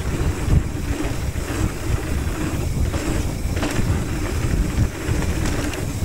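Wind buffeting the microphone on a fast mountain-bike descent, a heavy steady rumble, with the tyres running over loose dirt and gravel and a few sharp knocks and rattles from the Haro hardtail bike over bumps.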